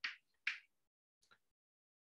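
Chalk writing on a chalkboard: two short scratchy strokes, one right at the start and one about half a second in, then a faint tick near the end.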